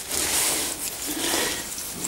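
Hand scraping loose sand from a soft, sandy cave wall: a soft scratchy rubbing with a few faint strokes.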